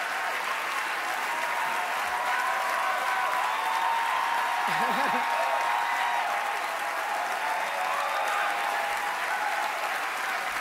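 A large audience applauding steadily, with a few voices calling out from the crowd.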